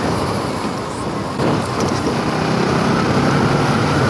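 Bajaj Pulsar NS200's single-cylinder engine running steadily at cruising speed, heard from the rider's seat over a constant rush of wind and road noise.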